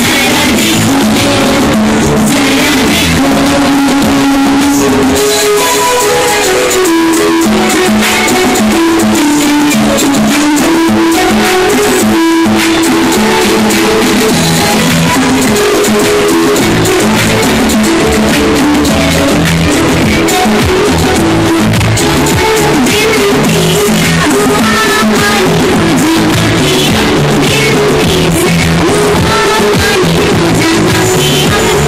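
Loud music with a melody line and drums playing steadily.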